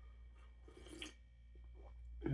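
Near silence, with a person faintly sipping coffee from a cup and a small click about a second in.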